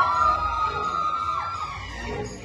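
A siren-like wailing sound effect in the dance mix played over the hall's speakers: a held tone that slides down and fades out about one and a half seconds in, marking a change between songs.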